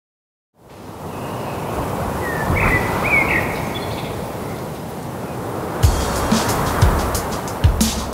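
Song intro: an ambient, noise-like bed fades in with a few short high chirps, then low drum hits start about six seconds in.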